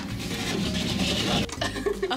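Otis lift doors sliding open, with rubbing and rustling of clothing and camera handling as the car is entered, and a few light knocks near the end.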